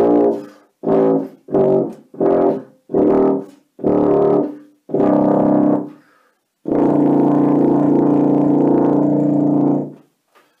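Tuba played low: a run of seven short detached notes, each a little longer than the one before, then after a brief pause one long held low note of about three seconds.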